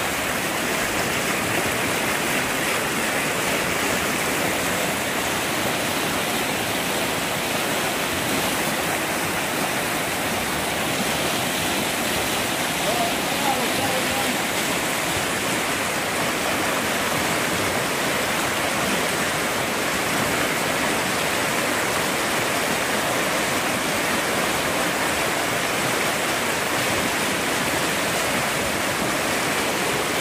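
A flood-swollen river rushing over rocks and rapids in a steady, unbroken wash of water noise.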